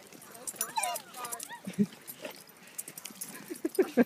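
Dogs playing together, with a few short barks or yips, the loudest about two seconds in and a cluster near the end, over faint background voices.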